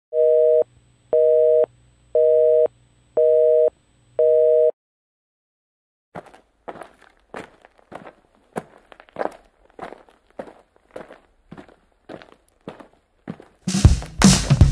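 A telephone busy signal: five steady beeps, about one a second. After a short pause come even footsteps, about two a second.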